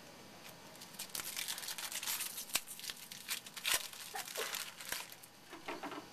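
Foil wrapper of a baseball card pack tearing and crinkling: a run of crackly rustles and sharp clicks, busiest from about one to five seconds in.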